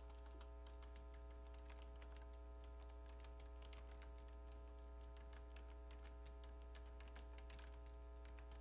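Faint, irregular clicking from a computer keyboard and mouse, heard over a steady low electrical hum.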